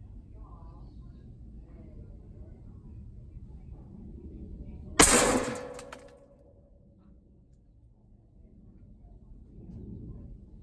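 A single shot from a Sumatra 500cc air rifle: one sharp crack about five seconds in as the pellet hits the target, ringing on for about a second. It is a hit.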